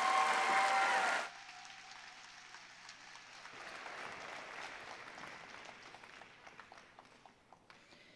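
Audience applause, loud for the first second, then cut down sharply to quieter, scattered clapping that thins out toward the end.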